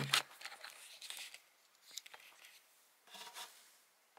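Faint handling noise: hands moving a camera and flashlight about inside an empty MDF subwoofer enclosure, soft rubbing and rustling with a few small ticks and a short rustle near the end.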